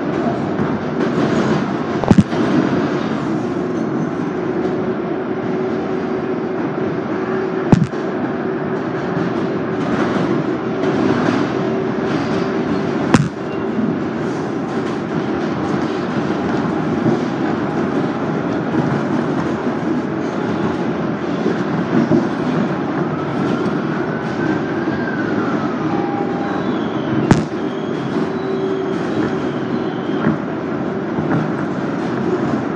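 R188 subway train running at speed on elevated track, heard from inside the car: a steady rumble of wheels on rail with a low hum. Four sharp cracks stand out, and a faint whine rises and falls near the end.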